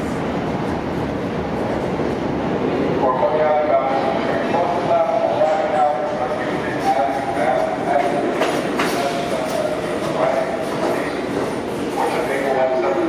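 New York City subway trains in a station: an R160 G train pulls out with a rumbling noise over the first few seconds, then an R46 A train comes in toward the end. Wavering mid-pitched tones run over the train noise from about three seconds on.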